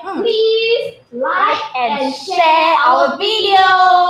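A woman's high, sing-song voice vocalizing drawn-out vowels without clear words, breaking off briefly about a second in and ending on a note held for about a second.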